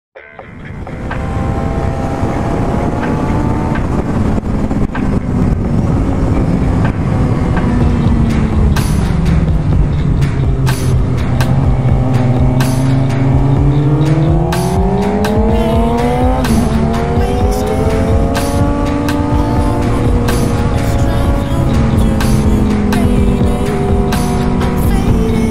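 Onboard sound of a 2006 Suzuki GSX-R's inline-four engine through a Yoshimura exhaust on track: the engine note falls slowly as the bike slows for a corner, holds low, then climbs under acceleration and drops sharply at an upshift about sixteen seconds in before rising again.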